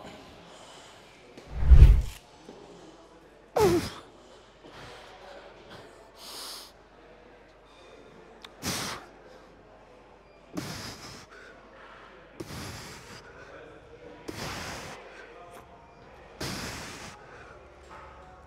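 A man lifting heavy dumbbells breathes out forcefully in short, hard exhales about every two seconds, once with a grunt, through a set of presses. A loud low thump comes about two seconds in.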